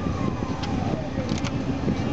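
Peugeot 207's 1.4 HDi diesel engine idling, heard from inside the cabin as a steady low rumble. A faint whistle falls in pitch over about a second, and there are a couple of light clicks.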